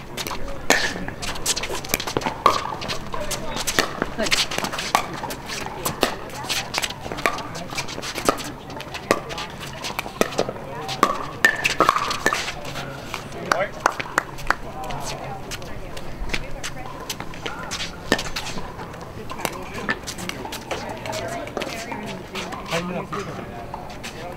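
Pickleball paddles striking a hard plastic ball in a doubles rally: a quick run of sharp pops, densest in the first half and thinning out later, with scattered voices.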